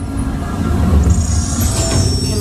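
Ride soundtrack music over the steady low rumble of an amusement-ride vehicle moving along its track, with a hiss building in the highs from about a second in.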